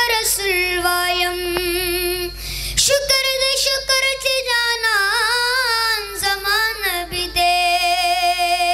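A boy singing a Pashto naat (Islamic devotional song) into a microphone, one voice drawing out long held notes. A few seconds in he climbs to a higher line with wavering, ornamented turns before settling on another long held note near the end.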